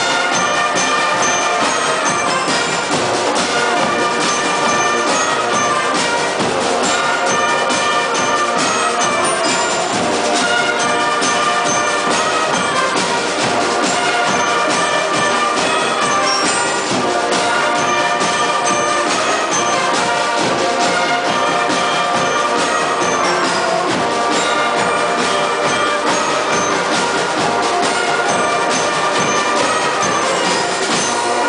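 Live school wind band playing: trumpets and euphoniums with flutes and clarinets, in full held chords that change every second or so.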